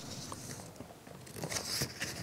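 Faint rustling and light clicks of a sheet of paper being handled, over low room noise, a little busier near the end.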